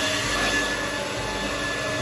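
Hand-held hair dryer running steadily, a rushing blow of air with a faint high whine from its motor.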